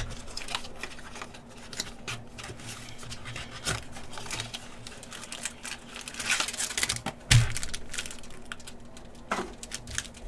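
Packaging of a trading-card hobby box being handled: cardboard scraping and a foil pack wrapper crinkling in short scattered rustles and clicks, with a dull thump a little past seven seconds in.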